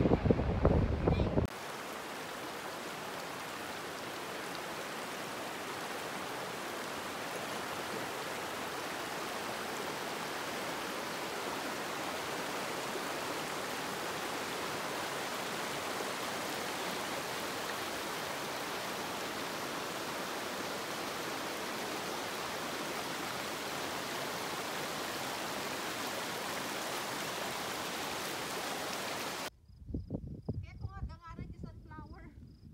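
Wind buffeting the microphone for the first second and a half. After a cut, a steady rush of flowing water from a rocky river or waterfall runs unchanged until it cuts off just before the end.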